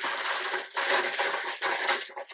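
A hand rummaging inside a cloth-lined basket of small plastic capsules, a rustling and rattling that comes in three bursts.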